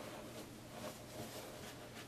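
Faint rustling of cotton fabric and stiff non-woven interfacing being handled, with a few soft brushes.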